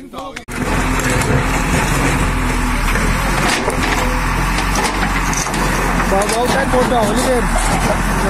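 JCB backhoe loader's diesel engine running steadily close by. It comes in abruptly about half a second in, with a few short knocks around the middle as the bucket works broken concrete.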